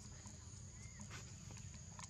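Faint outdoor ambience: a steady high-pitched insect drone over a low rumble, with a few soft ticks and a brief faint chirp about a second in.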